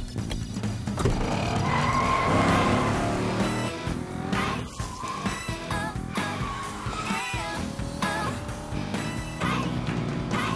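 Cartoon sound effects of a small car taking off and speeding away, with a rushing whine and several wavering tire squeals, over upbeat background music.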